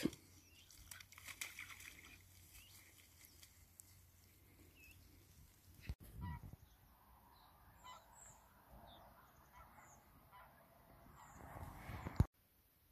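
Faint calls of a distant flock of geese flying over, heard from about halfway through as a scatter of short calls.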